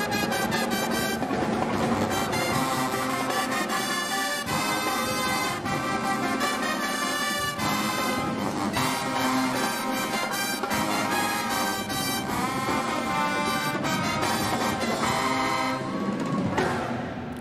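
Marching pep band playing a brass tune, sousaphones on the bass line under the other horns, over a drum kit, at an even level.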